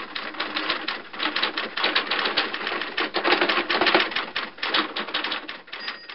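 Typewriter typing sound effect: a rapid, uneven run of key clacks that goes on without a break.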